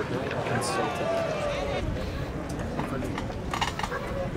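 Ballpark crowd noise: indistinct voices and chatter over a steady background hum, with a few sharp clicks near the end.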